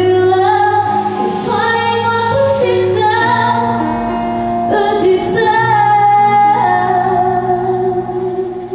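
A woman singing a song over instrumental accompaniment, with long held notes above a steady bass line and a few brief high cymbal-like splashes.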